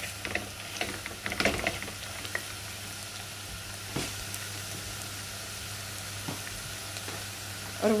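Sliced beetroot sizzling steadily as it fries in sesame oil in a clay pot. A wooden spoon scrapes and knocks against the pot several times in the first couple of seconds, with a few single knocks later.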